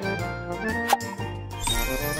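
Light background music with tinkling chimes, a single bright ding about a second in, and a whooshing swell starting near the end as a magic-transition effect.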